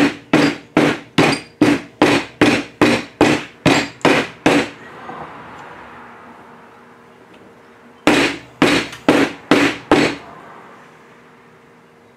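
A hammer strikes porcelain tiles wrapped in a kitchen towel, breaking them into mosaic pieces. It lands a quick, even run of blows, about three a second, for some four and a half seconds. After a pause of about three seconds, five more blows follow.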